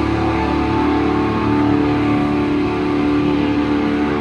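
Live heavy metal electric guitars holding one sustained, ringing chord with no drum hits, a steady held sound between riffs.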